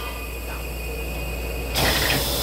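Stationary EMU800 electric train humming steadily in the cab, with a fainter hiss over it. A loud hiss starts near the end.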